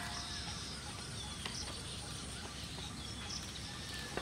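Steady outdoor rural background of crickets chirring, with a few faint short high chirps over it.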